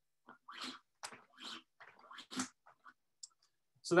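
A plastic ski boot and the cord wrapped around it being handled on a workbench: a scatter of short, uneven clicks and rustles.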